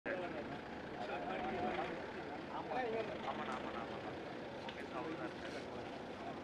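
Outdoor chatter of a group of men talking over one another, several voices overlapping, over a steady background rumble of noise.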